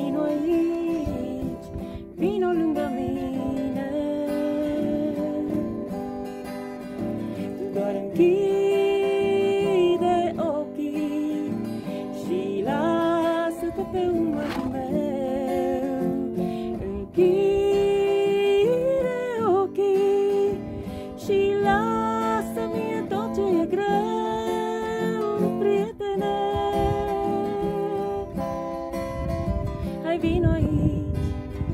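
A woman singing with long held notes while strumming an acoustic guitar, which she says is somewhat out of tune.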